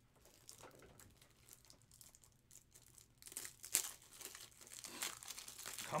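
Plastic crinkling and crackling as sports cards and their packaging are handled at a desk: faint at first, then louder with a few sharp crackles from about three seconds in.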